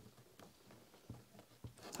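A few faint snips of Tim Holtz scissors cutting through lace, irregularly spaced, with little else heard.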